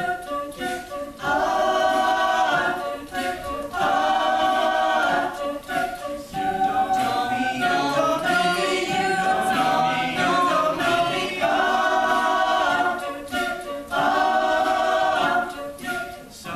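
Mixed-voice a cappella group singing wordless held chords in close harmony, each chord swelling for a second or more with brief gaps between, and short sharp clicks in some of the gaps.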